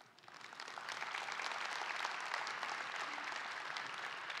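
Audience applauding, building up over the first second and then holding steady.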